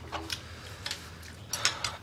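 A few light, scattered clicks and taps of small hard objects, over a faint low room hum.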